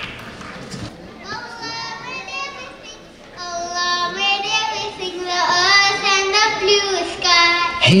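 High, children's-pitch voices singing a wordless vocal-only nasheed intro, held notes that glide between pitches, starting about a second in and growing louder toward the end.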